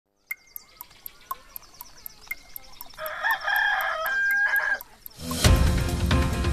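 A clock ticking about four times a second as a countdown, joined by a rooster crowing from about three seconds in, a wake-up signal for the 7 a.m. start. Music cuts in loudly near the end.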